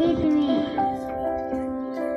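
Music playing: a held chord with a wavering melody line over it.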